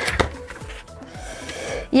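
A printed paper invoice rustling as it is lifted out of a cardboard box and set aside, with a couple of short handling knocks at the start.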